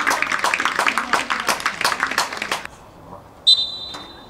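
Referee's whistle blown once, a short, sharp blast about three and a half seconds in that tails off, the signal for a free kick to be taken. Before it, voices and knocks for the first few seconds.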